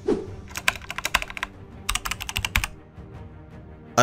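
Computer keyboard typing sound effect: two quick runs of keystrokes, each about a second long, over soft background music.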